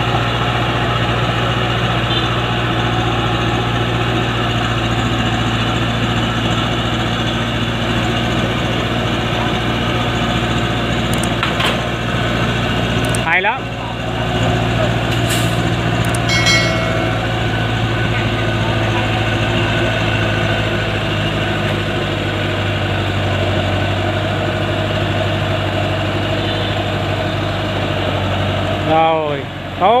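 Diesel engine of a Chiến Thắng light truck running steadily under heavy load as it crawls up a steep dirt slope carrying a long load of acacia poles, with a short dip about halfway through.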